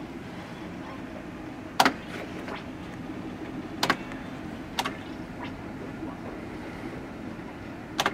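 A fruit machine being played: three short, sharp clicks about two seconds, four seconds and five seconds in, over a steady low background noise.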